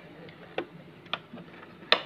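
A few short, sharp clicks from handling the thermal cycler. There are about four, spread through the two seconds, and the loudest comes just before the end.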